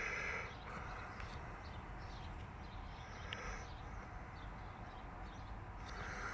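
Faint outdoor background noise with a few faint, short bird chirps.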